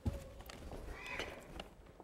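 A group of children's footsteps and shuffling as they walk away, opening with a sharp thump and followed by scattered light knocks.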